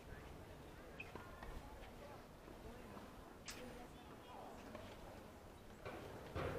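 Faint, distant voices calling across an open soccer field over a low outdoor hum, with a single sharp knock about three and a half seconds in.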